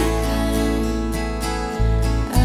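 Acoustic folk band playing an instrumental passage: strummed acoustic guitars with keys over a sustained bass note that changes near the end.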